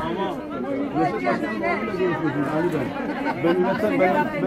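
Overlapping, indistinct chatter of several people talking at once.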